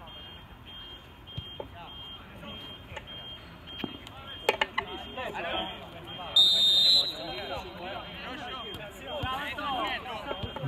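A referee's whistle, one short shrill blast about six seconds in, for the kick-off after a goal, with players' voices calling out on the pitch around it.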